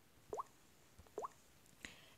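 Quiet room tone with two brief rising pops about a second apart, and a faint click near the end.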